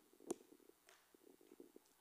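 Near silence: room tone, broken by one brief click about a third of a second in and a few faint ticks near the end.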